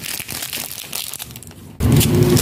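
Crackly crinkling and crushing of a sour-sugar-coated gummy candy being handled, in small irregular clicks. Just before the end a much louder, low sound cuts in abruptly.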